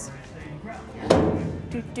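A single clunk about a second in as the swing-out tack box on a horse float is unlatched and opened.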